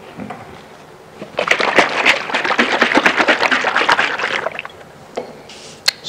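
Liquid sloshing and clattering in a small jar of ceramic pigment as it is handled, a dense rapid rattle that starts about a second in and lasts about three seconds.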